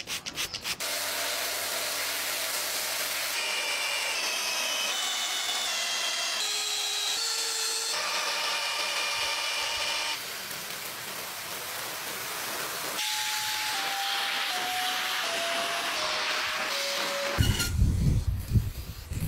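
A cordless drill with a round brush attachment scrubbing a foam-soaked carpet car floor mat: a steady scrubbing hiss under a motor whine that shifts in pitch in steps and drops step by step in the later part. Near the end a different, choppier sound takes over.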